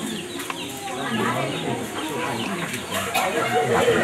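Indistinct chatter of several people talking at once in a room, with no single clear voice.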